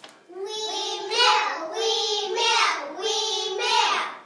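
Young children singing a short line of held notes, in several phrases.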